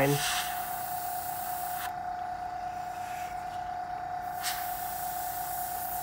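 Fine airbrush (Mr. Hobby Procon Boy PS770) spraying thin paint in a soft air hiss that stops for about two and a half seconds in the middle as the trigger is released, then resumes. A steady whine runs underneath.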